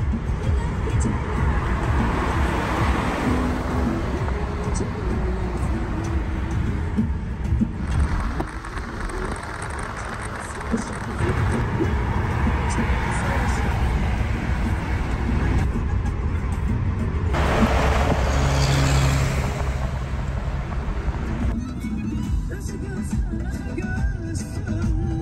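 Road and wind noise inside a moving car on a highway, under background music, changing abruptly several times where clips are cut together.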